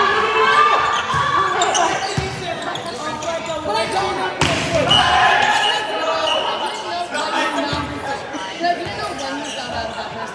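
Volleyball players shouting and calling out in a large gym, with sharp smacks of the ball being struck about two seconds in and again a little after four seconds.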